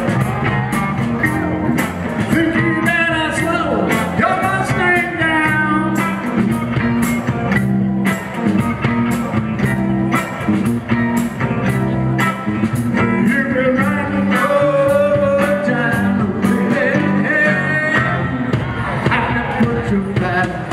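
Live rock band playing a 1960s-style oldies cover: electric guitars, bass and drum kit with a steady beat, and a lead singer's voice.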